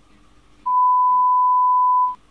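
A steady electronic beep: one high, pure tone that starts a little over half a second in, holds loud and even for about a second and a half, and stops abruptly.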